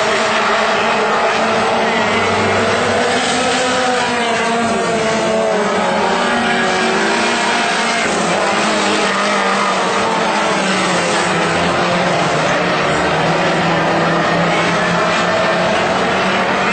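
Several four-cylinder WISSOTA Mod 4 dirt-track race car engines running together around the oval. Their overlapping engine notes rise and fall as the cars accelerate and lift through the turns.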